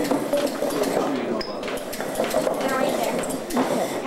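Indistinct voices talking in a room, mixed with short clicks and rustles of a clip-on microphone being handled and fastened to a jacket.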